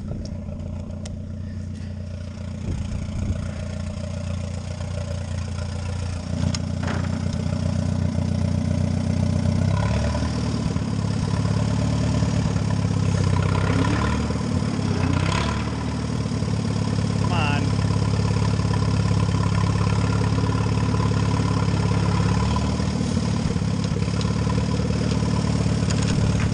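Allis-Chalmers WD tractor's four-cylinder engine running steadily while it pulls a box scraper. It grows louder about six seconds in and again about ten seconds in, then holds a steady working note, with a couple of short knocks along the way.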